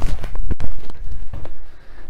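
Feet landing with heavy thuds from forward half squat jumps on an exercise mat, two main landings in the first second, then lighter steps as the jumping stops.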